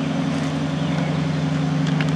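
A running machine's steady low hum, made of a few held tones.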